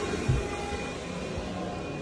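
Steady drone of a vacuum cleaner running elsewhere in the house, with faint steady tones in it, and a soft footstep thump about a third of a second in.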